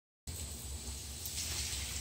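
Silence, then about a quarter second in a steady hiss of water spraying from a garden hose nozzle, with a low rumble underneath.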